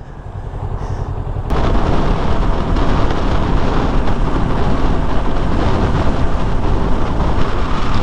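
Kawasaki Ninja 650 motorcycle riding at speed, with loud wind rush and low buffeting over the helmet camera's microphone. It starts quieter and swells, then jumps suddenly to a steady loud rush about a second and a half in.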